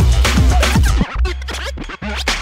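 Hip-hop turntable scratching: quick back-and-forth pitch swoops over a heavy bass line. The sound cuts out for a moment about a second in and again at the very end.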